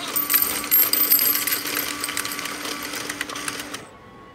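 Self-checkout coin inlet of an NEC FAL2 cash machine running as coins go in: a steady motor hum under a dense rattle and clicking of coins spinning in the rotating tray, cutting off shortly before the end.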